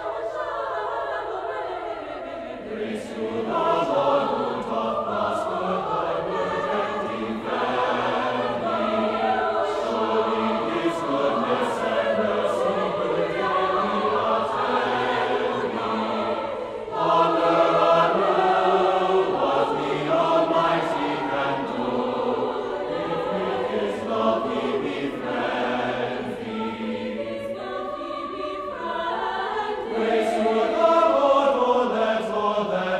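Mixed choir singing in several voice parts, with sung words. It grows louder about seventeen seconds in.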